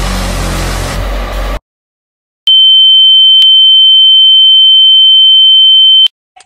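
A loud, noisy sound with deep bass cuts off suddenly. After about a second of silence, a loud, steady, high-pitched electronic beep on one note sounds for about three and a half seconds, with a brief click partway through.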